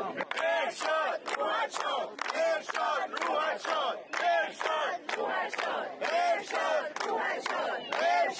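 Crowd chanting in unison, with rhythmic hand clapping about twice a second keeping the beat.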